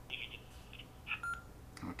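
Yaesu FT2D handheld radio's speaker giving out a garbled cross-moded digital transmission: a few short, thin, high-pitched bursts and a brief beep about a second in. The audio is broken up by interference between two radios working close together on the same band, and it does not sound very good.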